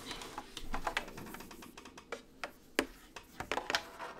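Irregular small plastic clicks, taps and scratches from fingers working a plastic drain nozzle fitting on a tea tray's water reservoir.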